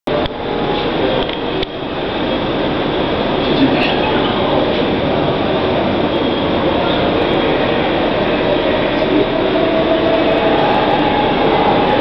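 Loud, steady rushing noise with no clear rhythm, and faint voices in the background.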